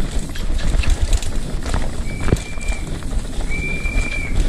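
Hardtail mountain bike running fast down a dirt singletrack: tyre roar, chain and frame rattle and knocks over roots, with wind on the microphone. Two brief high, steady squeals cut through, one about two seconds in and one near the end.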